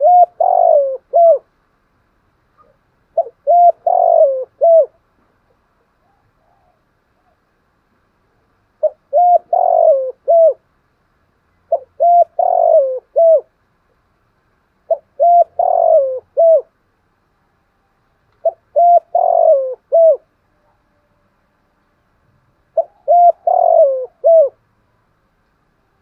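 Spotted dove cooing its full song: seven phrases a few seconds apart. Each phrase is a couple of short notes, a longer falling coo and a short final note.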